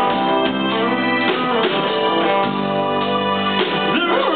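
Live rock band playing an instrumental passage with no vocals: sustained held chords from keyboards and accordion to the fore, over electric guitar and a few drum hits.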